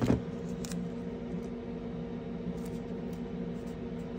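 Masking tape being handled on a plastic model car body: a short crackle right at the start as a piece comes off the roll, then faint ticks of the tape being laid and pressed down. A steady low hum runs underneath.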